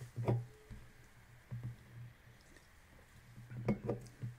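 A few faint clicks and knocks from a computer mouse and desk being handled, over a low hum.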